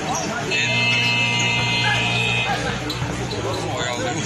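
A basketball scoreboard buzzer sounds once, a steady electronic tone lasting about two seconds and cutting off cleanly, over crowd noise.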